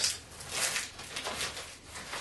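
Fabric rustling and crinkling as an item is pushed down into a backpack's pouch: a few uneven rustles, the loudest about half a second in.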